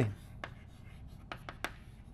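Chalk writing on a blackboard: a handful of short, sharp taps and scratches as letters are formed, the loudest about one and a half seconds in.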